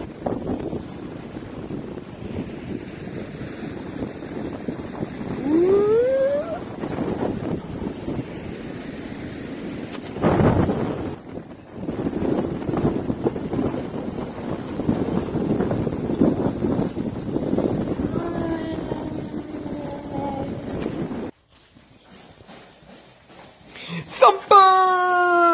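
Wind buffeting the microphone with surf washing in the background, with a brief rising call about six seconds in. Near the end the sound cuts off suddenly to a quiet room.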